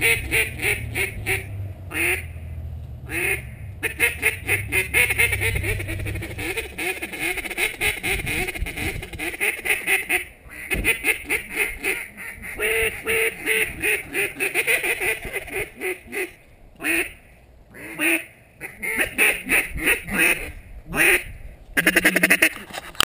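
Hand-blown duck call (Let-Em-Lite) sounding loud open-water style calling: long runs of short, rapid quacking notes broken by brief pauses.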